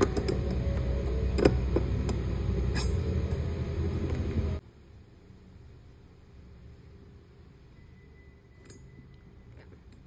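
Chrome scooter center rack clinking against the floorboard as it is set in place and its screws started, with a few sharp metallic clicks over a loud low rumble that cuts off abruptly about halfway through. After that only faint handling sounds and a small click remain.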